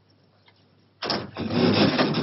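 A machine starts up suddenly about a second in, after near silence, and keeps running with a loud, noisy sound.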